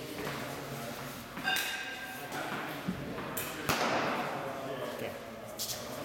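A pitched softball landing with a single thud about three and a half seconds in, with faint voices echoing in a large hall.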